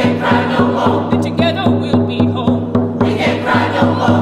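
A mixed choir sings held, sustained notes over a steady beat of a hand-held frame drum.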